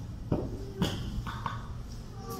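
Two dull thuds of a small child's bare feet landing on stacked rubber bumper plates, about half a second apart, over a steady low hum.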